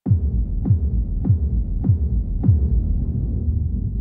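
Deep electronic bass booms in the soundtrack music: five strikes, each dropping in pitch, a little under two a second, over a steady low drone that carries on after them.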